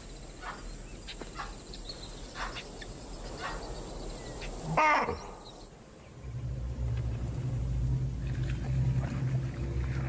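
Wild animals' alarm calls: short calls repeated about once a second, then one louder call that drops in pitch about five seconds in, as lions are spotted. From about six seconds a low steady drone takes over.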